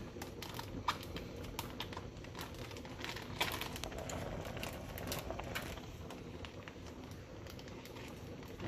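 A plastic gallon zip-top bag crinkling as scissors snip along its edges, with a scattering of small clicks.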